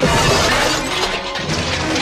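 A large pane of window glass shattering, starting suddenly and loudly and crashing on for about two seconds, with orchestral film music underneath.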